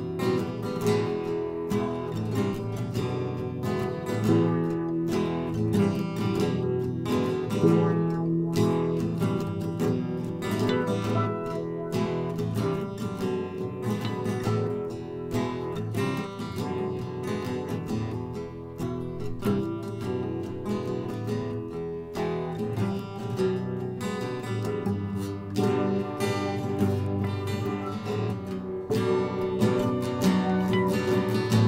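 Acoustic guitar played as an instrumental song passage, a steady run of plucked and strummed notes with no singing.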